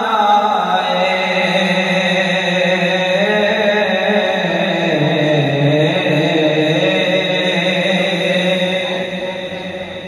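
Unaccompanied male vocal chanting of a naat: long held notes that step down in pitch around the middle and fade slightly near the end.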